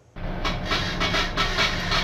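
Storm wind and rough sea heard from inside a cargo ship's bridge, a loud steady rush with a low hum of the ship underneath, starting abruptly just after a moment of silence.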